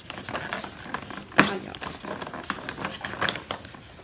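Fingers prying open a cardboard advent calendar door: a run of small crackles and taps, with a sharper snap about a second and a half in.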